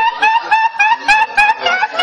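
A person laughing in a rapid string of short, high, rising snickers, about four a second.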